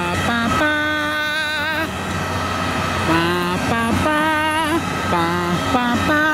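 A man singing a slow, horn-like tune on "ba" syllables: long held notes that waver slightly and step up and down in pitch, with short breaks between them.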